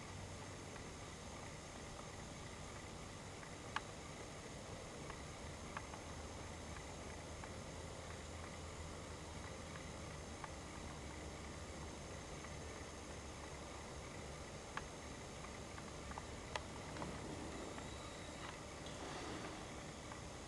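Faint, steady background hiss with a low hum, broken by a few soft, isolated clicks.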